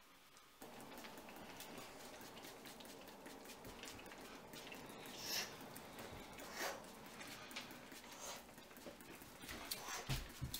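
Quick, deep breaths close to the microphone over soft hand noises on skin and hair, with two stronger breaths about five and a half and six and a half seconds in.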